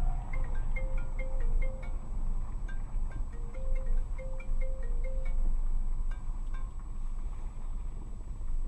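A short tune of clear bell-like chime notes plays and repeats, then stops about two-thirds of the way through, over the steady low rumble of a car driving on the road.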